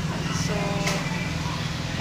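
Low, steady motor hum, with a woman's voice briefly saying a word over it.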